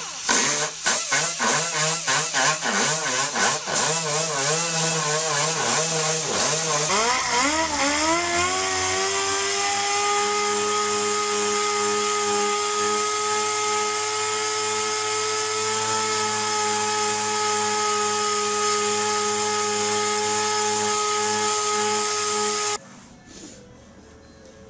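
A small rotary grinder with a burr cutting a V-groove into a crack in a plastic fender flare, its whine wavering and breaking off as the bit bites in and lifts. About seven seconds in, a dual-action (DA) sander spins up and runs at a steady whine, sanding spray-can paint off the fender with 180-grit paper, until it stops shortly before the end.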